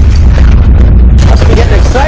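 Loud, steady deep rumble of an earthquake sound effect from a film soundtrack, with voices coming in about a second and a half in.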